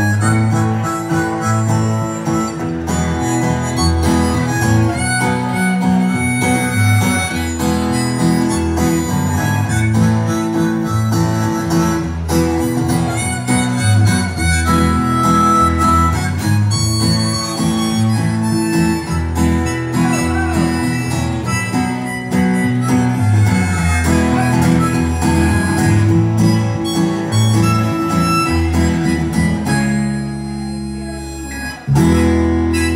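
Live band instrumental break: a harmonica played cupped to a vocal microphone carries the lead over strummed acoustic guitar and electric guitar, with a steady rhythm.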